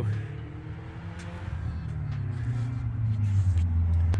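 Ford F-150 idling, a steady low hum heard inside the cab that swells slightly in the second half, with faint music underneath.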